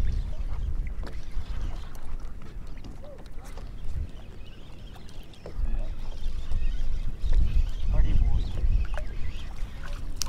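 Wind rumbling on the microphone over open water, easing off for a couple of seconds in the middle, with a few faint short pitched sounds on top.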